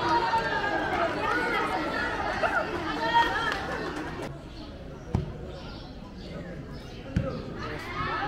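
Spectators' voices calling out close by during a grassroots football match, dying down after about four seconds, followed by two sharp thuds of a football being kicked, about two seconds apart.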